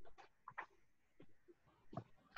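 Near silence with faint, scattered small taps and rustles of objects being handled at a desk.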